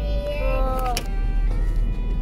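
A meow-like call that slides down in pitch through about the first second and ends with a sharp click. Underneath are background music and the low rumble of a moving car.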